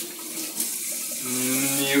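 Water running with a steady hiss, joined in the second half by a man's voice holding a long drawn-out "uh".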